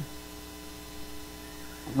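Steady electrical mains hum made of a few fixed pitches, with a faint brief sound about halfway through.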